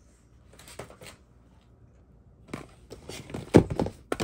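Hands rummaging among plastic cosmetic bottles, tubes and small cardboard product boxes inside a cardboard shipping box. A faint rustle about a second in, then from about two and a half seconds a run of knocks and clatters, loudest near the end.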